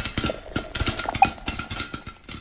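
Sound effect for an animated logo: a dense, irregular run of rapid clicks and clatters over a faint steady high tone.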